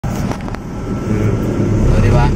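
Vehicle engine running with a steady low hum and road noise, heard from inside the cabin, with two sharp clicks in the first half second.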